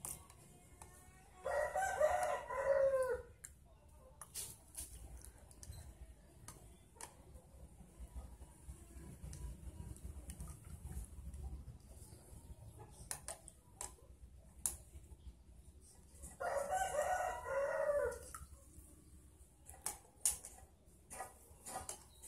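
A rooster crowing twice, about fifteen seconds apart, each crow under two seconds long and ending on a falling note. Between the crows come light clicks and taps of a metal spoon against a plastic tub.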